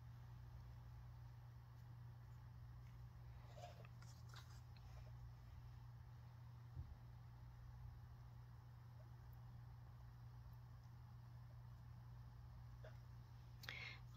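Near silence: room tone with a steady low hum and a few faint soft sounds, including a small tick about seven seconds in.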